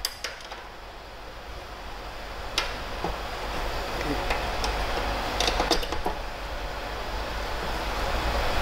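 Light clicks and knocks of cable plugs being handled and pushed into a mixer's rear output jacks, a few separate ones and a quick cluster past the middle. Under them runs a steady rushing background noise that grows louder.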